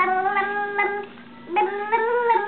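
A high voice making drawn-out, sing-song sounds without words: one long held tone, a short break, then another rising held tone.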